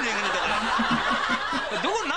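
Laughter throughout, several voices overlapping.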